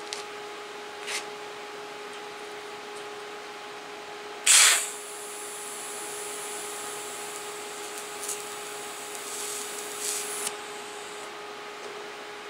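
A TIG welder's high-frequency start crackles loudly about four and a half seconds in. The arc then runs on 1 mm steel sheet at 65 amps with pure argon, a fusion weld with no filler, giving a steady high-pitched whine for about six seconds before it cuts off. A steady low hum runs underneath.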